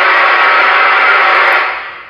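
A loud, steady hiss of static-like noise that fades out near the end.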